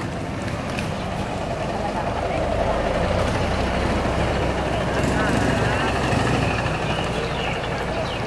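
Busy street-market din: background voices over a low engine rumble that grows louder from about two seconds in and eases off near the end, like a vehicle passing close by.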